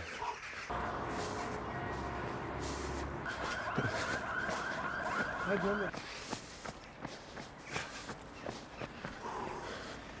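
Faint street ambience with a low traffic hum. A distant wavering siren sounds from about a second in until about six seconds in. A man's voice speaks briefly in the middle and again near the end.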